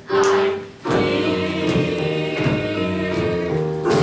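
A stage-musical cast sings together in chorus. They hold one note for the first moment, then move into a quicker sung line, with a few hand-drum beats underneath.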